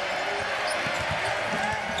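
Basketball dribbled on a hardwood court, a run of repeated low thumps, with sneakers squeaking and an arena crowd murmuring underneath.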